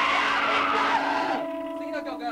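Distorted electric guitar squealing with amplifier feedback. A loud noisy wash with a steady held tone gives way, about a second and a half in, to quieter sustained feedback whines on a few fixed pitches.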